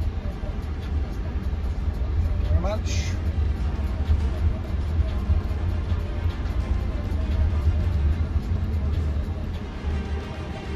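Low, steady road and tyre rumble inside the cabin of a moving Jaguar I-PACE electric car, with no engine note, and a short rising sound about three seconds in.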